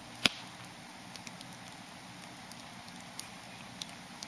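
Wood campfire crackling: scattered small pops and ticks over a steady low background, with one sharp pop near the start.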